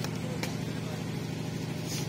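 Steady low hum with one faint click about half a second in, during a pause between a man's spoken phrases.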